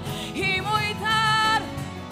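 A woman singing live with a small band of bass guitar, guitar and keyboard. She holds her last notes with vibrato, and the voice stops about one and a half seconds in while the band plays on.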